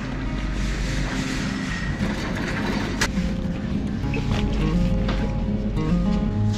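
Background music playing over the steady low rumble of a loaded shopping trolley being pushed across a concrete floor, with a single sharp click about three seconds in.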